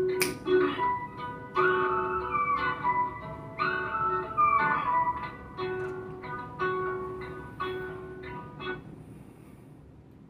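Instrumental outro of a song: guitar plucking a run of ringing notes that grow softer and die away shortly before the end.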